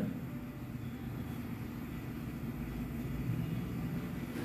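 Low, steady background rumble, swelling slightly about three seconds in.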